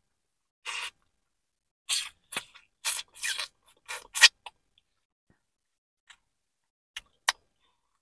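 Close-miked eating sounds from biting and chewing boiled shrimp: a run of short, wet bites and chews, loudest about four seconds in, then a lull with two sharp clicks near the end.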